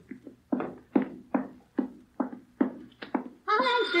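Radio-drama sound-effect footsteps on a hard floor, about two to three even steps a second, as someone walks off to answer a telephone. Near the end a telephone bell starts ringing.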